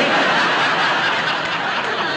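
Studio audience laughing, a loud burst of laughter that starts at once and tails off a little toward the end.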